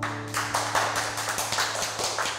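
Applause after a classical guitar piece ends, with the guitar's final low chord still ringing underneath.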